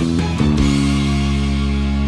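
Rock music with electric bass playing along. A run of short notes gives way, about half a second in, to a full chord that rings out and is held.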